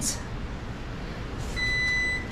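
A single electronic beep from a kitchen appliance: one steady high tone lasting about half a second, starting about one and a half seconds in, over quiet room noise.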